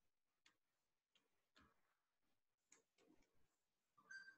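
Near silence, with a handful of faint, irregular clicks and small noises.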